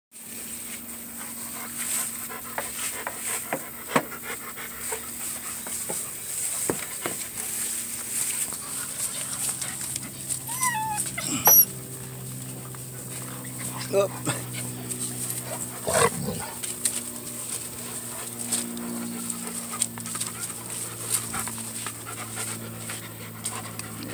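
Puppies being handled close to the microphone: rubbing and knocking noises, with a short high whimper that slides in pitch about eleven seconds in.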